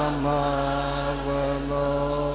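Slow worship singing through a church PA: a man's voice holding a long note, with a second, lower pitch held under it in harmony, over a steady low hum.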